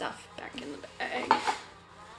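Small hard objects clinking and knocking together as they are handled and set down, several times, the loudest about a second and a half in, some leaving a brief ring.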